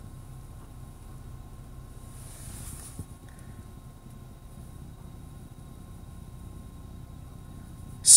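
Faint, steady low rumble inside a stationary car's cabin, with a brief rise of hiss two to three seconds in and a small click about three seconds in.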